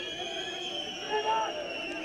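Match ambience from a stadium with almost no crowd: scattered distant voices of players calling out on the pitch, one a little louder just past the middle, over a steady faint hum of the ground.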